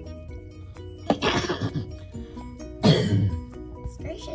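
A person coughing twice, a put-on cough acting out a sick horse, over steady background music.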